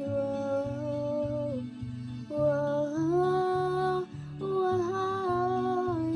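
A girl's voice singing long, wordless held notes that step up in pitch twice, over an even strummed guitar accompaniment of about two strokes a second.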